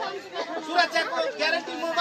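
Speech: a man talking to a crowd, with other voices chattering around him.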